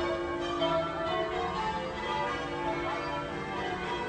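Cathedral bells ringing: several bells struck one after another, each tone ringing on and overlapping the next.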